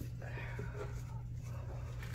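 Faint, murmured speech over a steady low hum.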